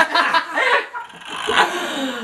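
A small group of young people laughing together, in loud broken bursts.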